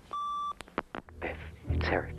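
Answering machine playing back a message: one steady beep about half a second long, a few clicks, then a recorded man's voice starting to speak.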